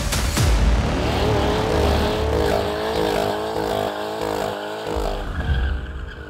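A car skidding: a long tyre squeal that wavers in pitch over a low engine rumble, mixed with intro music, fading out near the end.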